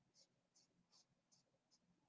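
Near silence: a pause between sentences, with only very faint high ticks barely above the noise floor.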